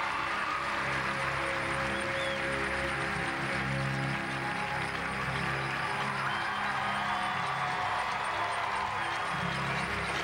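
Program music for a figure skating routine, playing steadily with long held notes.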